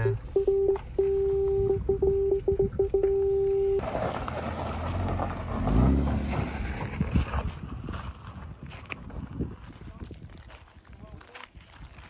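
BMW 540's parking-sensor warning beeping at one steady pitch, short beeps running into two longer held tones as the car closes on an obstacle while parking, stopping under four seconds in. After that comes a car's engine and tyres on gravel, loudest about six seconds in, then fading.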